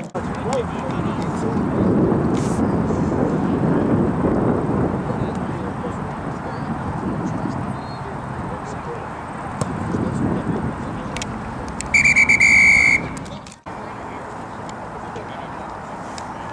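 A referee's whistle gives one loud, steady blast of about a second near the end, over a low rumble of field noise and faint distant voices.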